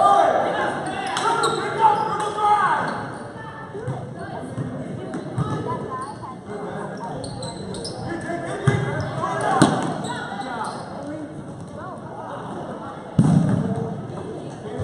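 Basketball bouncing on a gym court amid spectators' and players' voices and shouts echoing in a large hall, with a couple of sharp knocks a little past halfway and a loud thud near the end.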